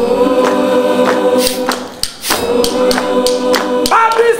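Gospel choir singing a cappella in held harmony, kept in time by a steady beat of sharp hand claps about three a second.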